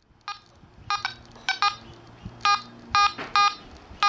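Quest Pro metal detector giving short electronic beeps, about eight of them and several in quick pairs, as a 9ct gold wedding band is swept over its search coil for a target ID of 56.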